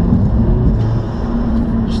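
Audi S3 saloon's turbocharged 2.0-litre four-cylinder engine running under way, heard from inside the cabin, with the induction sound of an aftermarket Revo air intake, which the owner calls insane.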